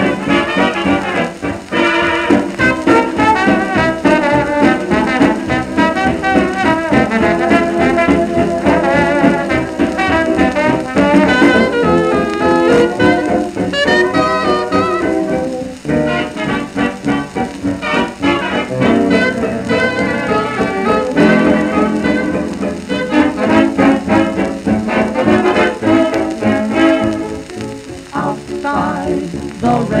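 Instrumental passage of a dance-orchestra fox-trot with brass to the fore, played from a 78 rpm shellac record.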